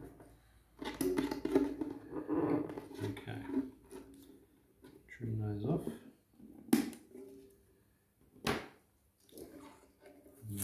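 Side cutters snipping the end of a nylon ukulele string at the bridge: two sharp clicks, about a second and a half apart, in the second half. Before them, a man talks in low, indistinct speech.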